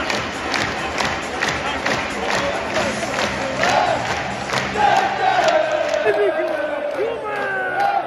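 Football stadium crowd clapping in rhythm, about two claps a second, and chanting. For the last three seconds a nearby voice holds one long shouted note.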